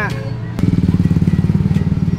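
Motorcycle engine running close by, a rapid even pulsing that suddenly gets louder about half a second in.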